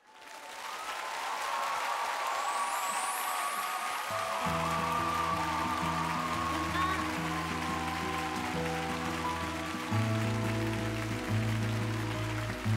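Theatre audience applauding and cheering as the live song ends. About four seconds in, sustained low music tones come in under the applause and hold.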